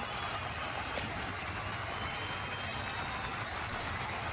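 Steady rushing background noise, even throughout, with no distinct events.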